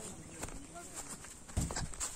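Footsteps on grass with faint, distant voices, and one short, louder low sound about one and a half seconds in.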